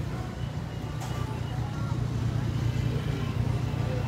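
Steady low rumble of a queue of cars creeping along a street in heavy traffic.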